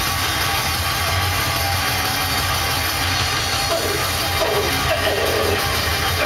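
Metal band playing live: distorted electric guitars and a drum kit, loud and dense with no break.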